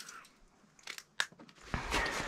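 A few light, sharp clicks just past the middle, the plastic flip-top lid of a seasoning can being handled and snapped shut, then rustling and crunching near the end as the person shifts about on packed snow.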